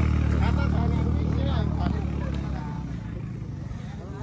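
A motor vehicle's engine running at a steady pitch, a low hum that fades away over the few seconds, with people's voices faint beneath it.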